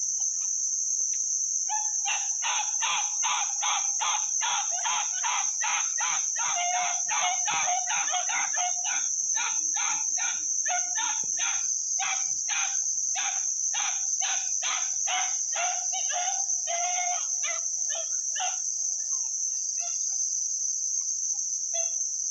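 Five-month-old puppies yipping in a rapid, unbroken string, about four yips a second, slowing and stopping near the end. A steady high drone of insects runs underneath.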